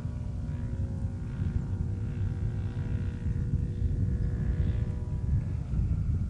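Model airplane's engine droning steadily in flight, with heavy wind rumble on the microphone.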